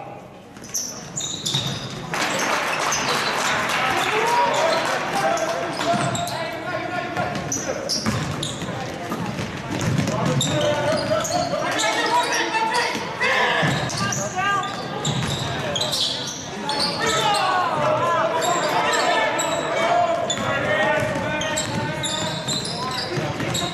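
Live high school basketball play in a reverberant gym: the ball bounces on the hardwood floor again and again, sneakers squeak in short sharp squeals, and players and coaches shout.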